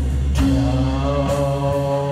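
Live psychedelic rock band playing a long held note over a steady low drone, with a couple of crashes on top.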